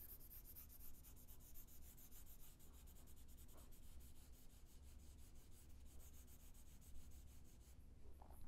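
Faint scratching of a graphite pencil shading across paper, close to near silence.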